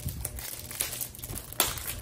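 Clear cellophane wrapping on a small perfume box crinkling as it is handled and pulled off, with a sharper crackle near the end.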